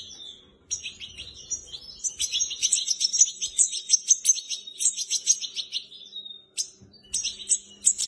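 Seventeen-day-old European goldfinch fledglings giving rapid, high, continuous chirping calls: begging as they are hand-fed from a syringe. There are short breaks about half a second in and near the end.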